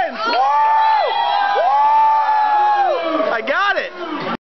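People whooping over a crowd: two long drawn-out 'woo' calls that rise and then fall away, followed by shorter calls near the end.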